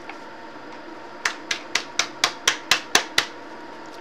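A silicone resin mold being smacked on its back by hand to knock the loose mica powder out of it: a run of about nine quick, sharp smacks, about four a second, starting a little over a second in.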